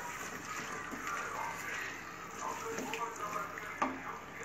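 A spatula stirring mutton pieces through thick, wet masala in an aluminium pressure cooker, with a soft, steady scraping and squelching. There is one sharp knock near the end.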